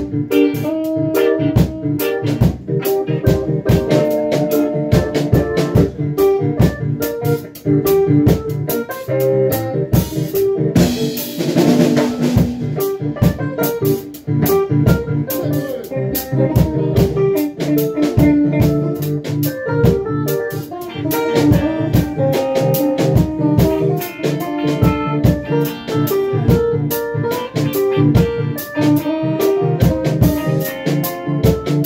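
A live band playing a reggae groove: drum kit, electric guitars and keyboard keeping a steady, rhythmic beat. A brief noisy wash rises over the band about a third of the way in.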